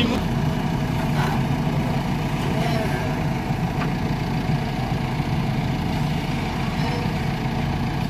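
JCB backhoe loaders' diesel engines running steadily.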